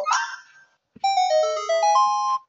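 A short electronic jingle from the cartoon's soundtrack: a run of clear, separate notes that steps down and then climbs back up, starting about a second in, after a brief bit of voice at the very start.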